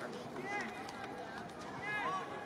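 Several men shouting and calling out across a football pitch in a largely empty stadium: separate calls about half a second in and near the end, over a steady background noise.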